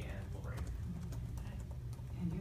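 Scattered clicks of typing on a laptop keyboard, heard over faint voices and a steady low room hum.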